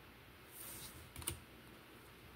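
Faint handling of a deck of paper cards: a short papery swish about half a second in, then a few quick light clicks of cards tapping together just past one second.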